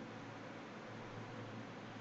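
Faint steady hiss with a low hum underneath: the background room tone of a desk microphone, with no other sound.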